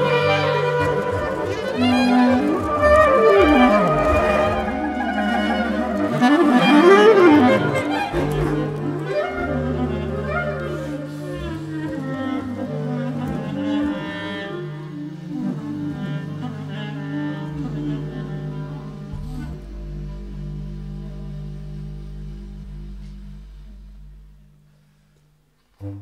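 Balkan clarinet ensemble music: clarinets play fast swirling runs and pitch glides over a sustained low drone. The texture thins out and the music fades away to near silence shortly before the end.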